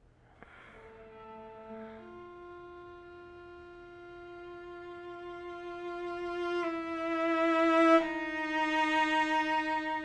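A cello is bowed without vibrato, with steady, unwavering pitch. It plays a couple of short notes, then long held legato notes that step gently from one to the next. The tone swells steadily louder up to about eight seconds in, then eases a little.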